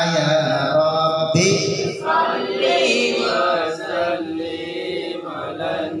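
Male voices chanting an Arabic sholawat, a devotional song in praise of the Prophet about the Hajj pilgrimage to Mecca and Medina, in a continuous melodic line.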